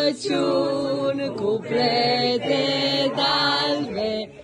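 A group of children singing a Romanian Christmas carol (colindă) together, in long held notes with short breaks between phrases.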